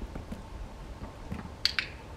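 A dog-training clicker clicking about one and a half seconds in, heard as two sharp clicks in quick succession as it is pressed and released, marking the puppy's correct position.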